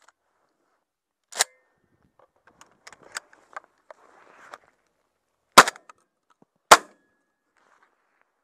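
Two shotgun shots about a second apart, the loudest sounds here. They follow a quieter sharp bang about a second and a half in and a couple of seconds of light clicks and rustling as the gun is handled.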